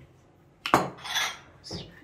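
A drinking glass set down on a table with a sharp knock about two-thirds of a second in, followed by a short hiss and a softer knock near the end.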